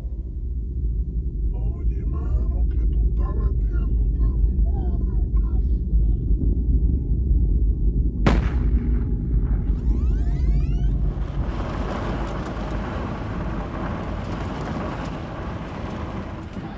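A deep, steady rumbling drone under a few short spoken exchanges, cut by a single sharp crack about eight seconds in. A sweeping whoosh follows, then a steady noisy hiss like street ambience.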